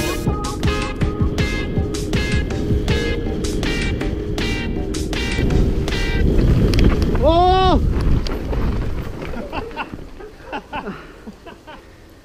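A rock music track with a driving beat plays for the first half, then stops. The on-board sound of a mountain bike racing down a dirt trail takes over, a loud rumble of wind and trail noise, with a short cry that rises and falls about seven and a half seconds in. The noise then dies away into a few scattered knocks as a rider crashes.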